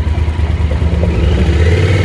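Yamaha Super Tenere's parallel-twin engine running while riding, its pitch rising over the second second as it accelerates, with wind noise over the microphone.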